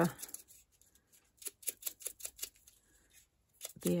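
Blending brush brushing ink over the edges of cardstock flower petals: a quick run of short brushing strokes against the paper, about a second and a half in.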